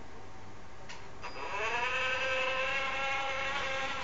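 Electric drive motor of a small robotic car whining as it drives, after a click about a second in; the pitch rises briefly as it spins up, then holds steady. The car keeps running on toward the obstacle because its IR obstacle detection reacts with a long delay.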